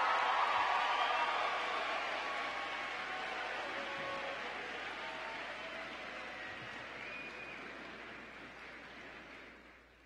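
Audience applauding, with a few voices calling out, loudest at the start and dying away steadily over several seconds until it is nearly gone.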